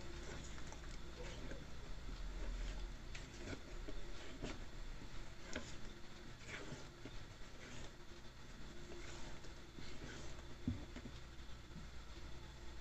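A spatula stirring thick cake batter in a bowl: soft, irregular scraping and scattered light taps against the bowl.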